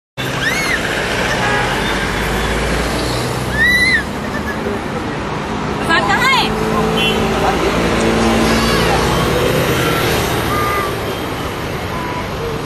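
Steady road-traffic noise with people's voices mixed in, and a few short rising-and-falling calls rising above it.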